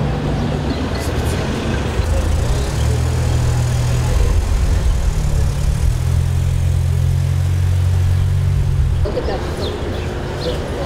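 A motor vehicle's engine running steadily close by amid city street traffic, a low hum that is strongest through the middle of the stretch. Voices come in near the end.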